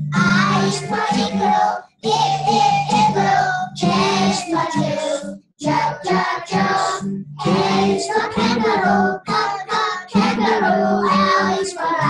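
A group of young children singing a song together, in sung phrases with short pauses for breath about two seconds in and again around five and a half seconds.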